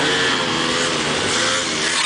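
Motorcycle engine running, its pitch rising and falling slightly as the throttle is worked.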